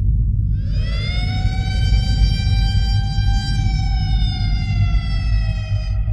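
A siren-like wail winds up about half a second in, holds one pitch, then slowly sinks and thins out, over a loud, steady low rumble.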